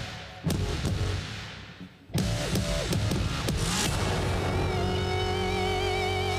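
Live band music with no vocals: two full-band hits, about half a second and two seconds in, each ringing down. From about four seconds a held chord follows, with a wavering high lead line over a steady low bass.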